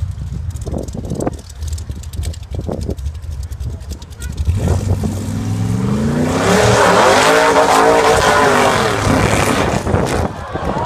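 Rock bouncer buggy engine revving hard under load: a low rumble that rises in pitch from about halfway, stays high and loud, then drops back near the end.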